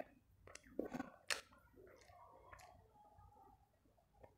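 Close-miked chewing and wet mouth sounds of a person eating chicken with rice by hand, with a few sharp clicks in the first second and a half.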